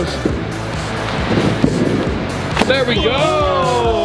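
Background music with a steady bass under a group's shouting and cheering. About two and a half seconds in comes one sharp thud as a person lands on a crash mat after diving through a shape in a foam board.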